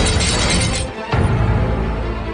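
Dramatic film-trailer music with sound effects: a dense crash-like noise that cuts off just before a second in, then a sudden deep hit and low, sustained music.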